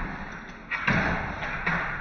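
Thuds and scuffling of an American Bully and a man tussling over a padded bite sleeve on a hard floor: irregular knocks of paws and feet, with a louder thump a little under a second in.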